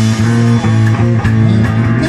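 Live rock band playing through amplifiers: electric guitar and bass guitar holding steady low notes over a drum kit's regular hits.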